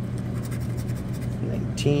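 A lottery scratch-off ticket being scratched with a plastic tool, light scraping as a number spot is uncovered, over a steady low hum.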